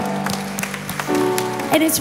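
Keyboard holding soft sustained chords as a worship song winds down, with some applause from the congregation. A woman's voice comes in near the end.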